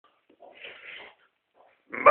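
A faint breathy sound from a person, lasting about half a second.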